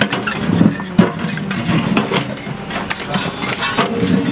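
Volvo backhoe loader's diesel engine running under load as its excavator bucket digs into the old embankment base. Broken chunks of the old base clatter and scrape against the bucket, with a sharp knock about a second in.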